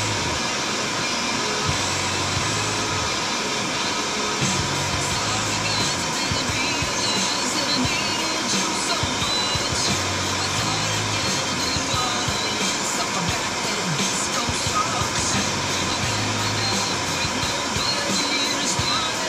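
Music from a car radio heard inside the car's cabin, with a steady bass line, under a constant rushing noise with faint scattered ticks.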